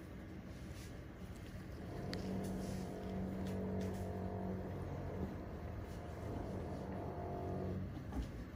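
A steady low motor-like drone, louder from about two seconds in and cutting off just before the end, with a few faint clicks.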